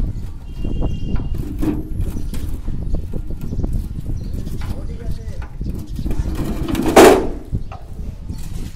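Steel formwork panel being worked with a wrench: light metallic clicks and taps, then a loud clank about seven seconds in as the panel is set down flat on the ground, over a steady low rumble.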